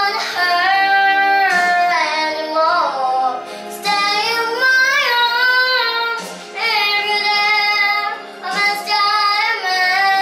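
A young girl singing a ballad into a handheld microphone, in long held phrases that slide up and down in pitch, with short breaks for breath between them.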